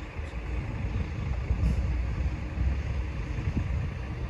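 Power-folding fabric roof of an Aston Martin DB11 Volante running through the end of its lowering cycle, the mechanism working as the tonneau cover closes over the stowed roof, against a low, uneven rumble.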